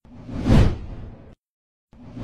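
Whoosh sound effect for an animated logo intro: a rushing swell that peaks about half a second in and cuts off abruptly. A second whoosh starts near the end.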